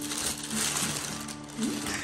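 Tissue paper crinkling and rustling as it is pulled away from a new pair of shoes in a cardboard shoebox, over background music with held notes.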